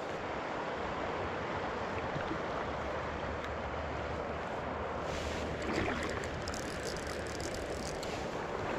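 Shallow river riffle running over rocks, a steady rushing of water, with a few faint ticks in the last few seconds.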